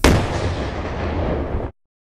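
A single sudden loud blast, an added explosion-type sound effect, with a rumbling, hissing tail that lasts about a second and a half and then cuts off abruptly.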